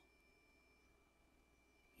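Near silence: room tone with a faint steady high-pitched tone.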